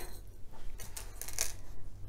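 Cotton quilt fabric being handled and lined up for pinning: faint rustling, with two brief louder rustles around the middle.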